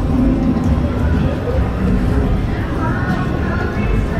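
Casino floor ambience: background music with indistinct people's voices over it, at a steady level.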